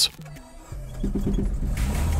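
A classic Lada's four-cylinder engine starting: a brief burst of quick, even cranking pulses just under a second in, then the engine catches and runs with a steady low rumble.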